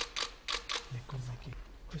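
Camera shutters clicking in a quick run, about five a second, stopping about a second in, followed by a man's low voice.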